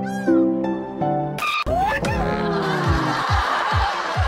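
Soft, gentle background music with a short high chirp, cut off about a second and a half in by an edited-in comedy sound effect: a long, falling cat-like yowl over a hiss, with quick falling low thumps beneath it.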